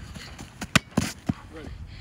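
Three quick sharp thuds about a quarter second apart, a little under a second in: running footsteps on artificial turf.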